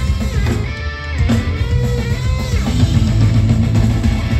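Punk rock band playing live and loud: an electric guitar riff over a drum kit.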